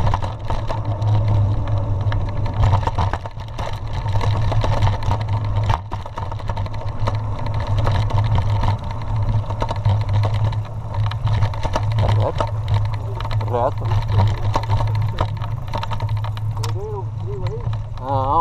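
Mountain bike rolling fast down a rough dirt road: a steady low rumble of wind on the bike-mounted camera's microphone and tyres on the dirt, with the bike rattling and clicking over the bumps. A few brief wavering vocal calls are heard, once around two-thirds of the way in and again near the end.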